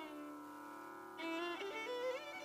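Carnatic violin in raga Kharaharapriya over a steady drone: a held note dies away, then about a second in the violin comes back in with sliding, ornamented phrases.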